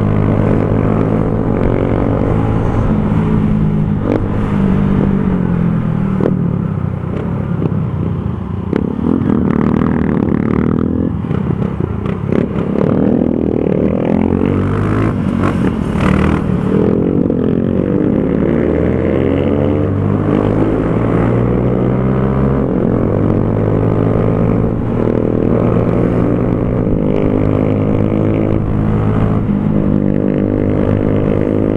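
Single-cylinder four-stroke engine of a Honda CG Fan 150 motorcycle with an aftermarket Torbal Racing exhaust, running under way. Its revs rise and fall repeatedly through the middle, then hold steadier near the end.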